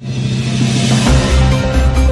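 News-channel intro sting: a loud swelling whoosh over sustained low notes, with heavy deep bass hits coming in about a second in.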